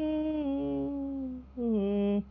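A woman singing a Dao folk song without accompaniment. She holds one long syllable that slowly sinks in pitch, breaks off about a second and a half in, then starts a new, lower note.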